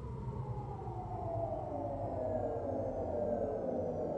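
A siren-like tone of several pitches sliding slowly and steadily down, about an octave over four seconds, over a low rumble: a film sound effect for the stunned moment around a car crash.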